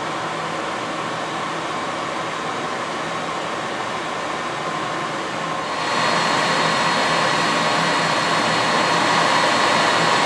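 A steady machine whir with a faint whine in it, starting suddenly and growing louder about six seconds in.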